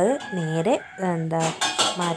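A woman's voice talking, in short phrases with brief breaks between them.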